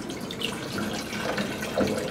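Water pouring from a plastic bottle into a clear plastic blender cup, running on steadily.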